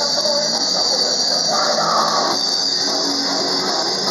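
Hardcore punk band playing live: a loud, dense, unbroken wall of guitar and drums, with a steady wash of cymbals over it.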